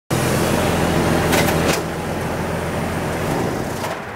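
Car engine running as a vehicle rolls slowly onto a concrete driveway close by, loudest in the first two seconds and then easing, with a couple of light clicks about a second and a half in.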